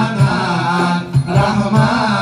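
Male voices chanting improvised Acehnese verse (seumapa) into microphones in a long, wavering melodic line, with a rapa'i frame drum struck beneath the singing.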